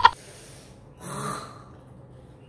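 A man's sharp, hissing intake of breath about a second in, the reaction to the burn of very spicy noodles in his mouth.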